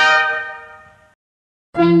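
A held brass chord from a fanfare fades out over about a second. After a short silence, a Bollywood-style song with singing starts near the end.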